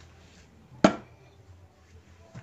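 One sharp knock from a squeeze bottle of furniture polish being handled against a wardrobe shelf, a little under a second in, over low room noise.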